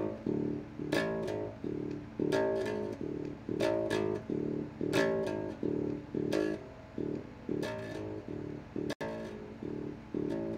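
Cheap electric bass guitar played through its small practice amp: plucked notes in a repeating pattern, each phrase opening with a sharp string attack about every second and a quarter. A split-second dropout cuts the sound near the end.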